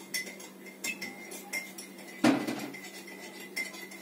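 Light metallic clinks, a few a second, each ringing briefly, with one louder knock a little past halfway, over a steady low hum.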